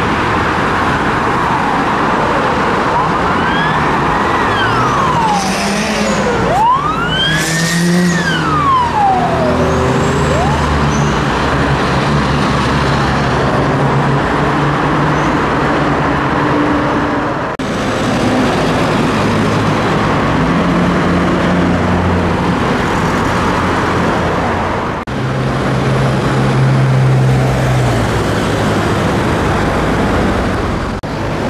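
Steady traffic on a busy multi-lane city road: engines and tyres of passing cars and trucks. Two smooth rising-and-falling whines about four and seven seconds in.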